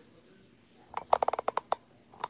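A quick run of about eight sharp clicks or taps, starting about a second in and lasting under a second.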